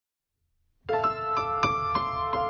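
Silent for almost a second, then improvised piano music begins suddenly: a held chord with a few single notes struck over it.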